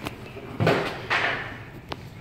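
Handling noise: a click, then two louder scuffs and knocks about half a second apart, and another sharp click near the end.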